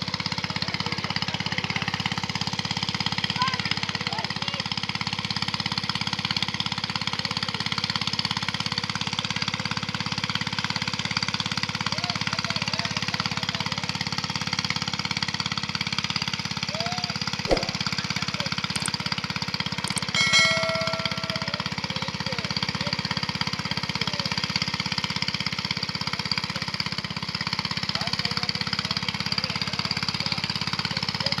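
A small engine running steadily, with faint voices in the background.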